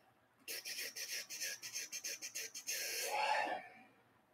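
A man's breathy, stifled laugh: a quick run of about a dozen short breath pulses, then a longer voiced exhale about three seconds in.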